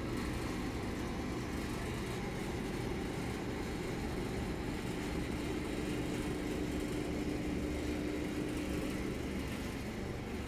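Shopping trolley wheels rolling over a tiled store floor, a steady low rumble with a faint steady hum underneath.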